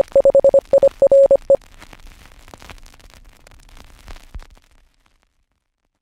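Morse code beeping, a single mid-pitched tone keyed in dots and dashes, over crackling radio static. The beeping stops about a second and a half in. The static carries on more quietly and fades out near the end, leaving silence.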